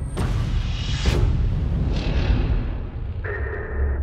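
Cinematic trailer sound design: a deep sustained rumble with three sudden hits about a second apart, and a steady tone coming in near the end.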